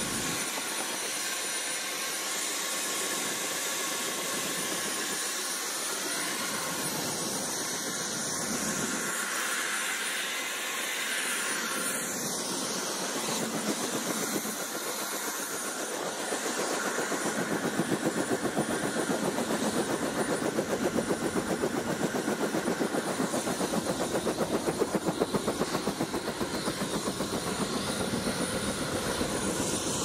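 Small helicopter running on the ground with rotors turning: a steady engine hiss and whine, with a fast, even beat of rotor chop that grows louder in the second half.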